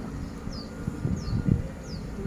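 A small bird calling in three short, high chirps, each falling in pitch, evenly spaced about two-thirds of a second apart, over a low outdoor rumble.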